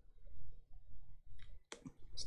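A few faint clicks near the end over a low room rumble.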